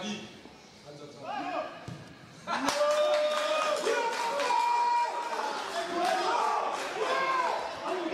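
Several people shouting and calling out over each other on a football pitch, starting suddenly and loudly about two and a half seconds in with a sharp knock, then carrying on.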